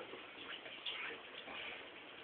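Faint, scattered ticks and clicks over low background noise.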